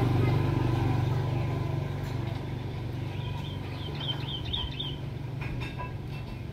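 Caged hill myna giving a quick run of about five short high chirps in the second half, over a low steady hum that fades during the first few seconds.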